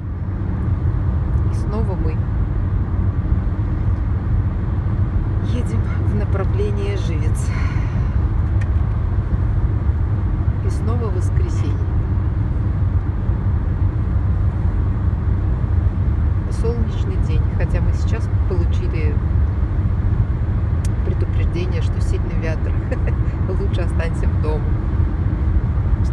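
Steady low rumble of road and engine noise inside a car's cabin at highway speed.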